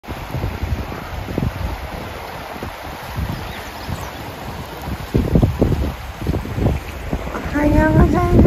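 Wind buffeting the microphone in irregular low gusts over the steady rush of a fast-flowing river. A brief voice is heard near the end.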